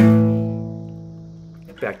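Acoustic guitar: a single downstrummed fifth-fret power chord (A5) that rings and fades away over nearly two seconds.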